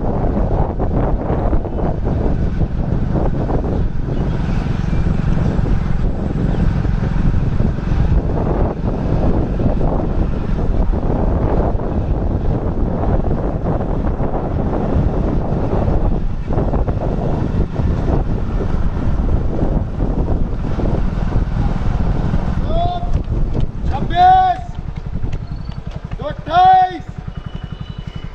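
Wind buffeting the microphone in a steady low rumble while the camera moves alongside the runners. Near the end a man shouts loudly several times, short calls about a second or two apart.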